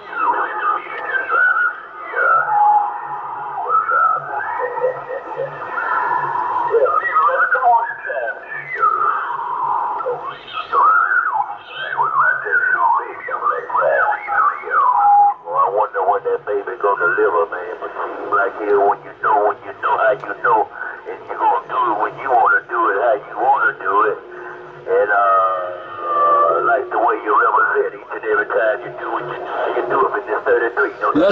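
Voices of other CB stations received in AM on channel 6 (27.025 MHz) through the Yaesu FT-450AT transceiver's speaker: thin, narrow-band radio speech over band noise, with a change of voice about halfway through.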